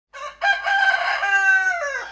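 A rooster crowing: a short first note, then one long held call that falls in pitch at the end.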